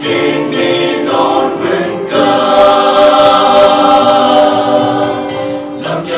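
Mixed choir of women's and men's voices singing a hymn in parts, building into a loud chord held from about two seconds in until just before the end, when a new phrase begins.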